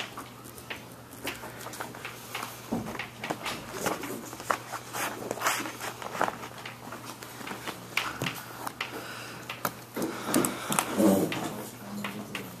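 Room noise in a classroom: scattered irregular clicks, knocks and rustles of things being handled and people shifting, over a steady low hum, busiest about ten seconds in.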